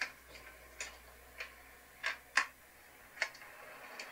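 A drawer of a fitted van workbench being pulled open by its handle, with about six sharp clicks and knocks from the drawer catch and runners, the loudest about two and a half seconds in.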